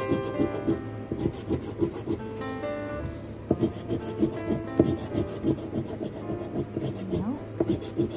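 A large metal coin scraping the coating off a paper lottery scratch ticket in quick, repeated rasping strokes.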